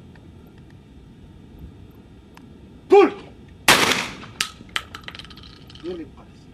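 A short shout calling for the clay, then about a second later a single loud blast from a 12-gauge Baikal semi-automatic shotgun with a ringing tail, followed by a few fainter sharp clicks.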